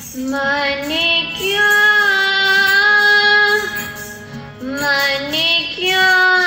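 A young voice singing kirtan, a Sikh devotional hymn, in long held notes that glide up into each phrase. One phrase runs to about three and a half seconds in, and a second begins just before the end, over a steady sustained tone underneath.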